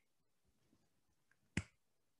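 A single crisp finger snap about one and a half seconds in, after a pause of nearly two seconds. It is part of an uneven snapped beat that illustrates a slight variation on a steady, metronome-like pulse.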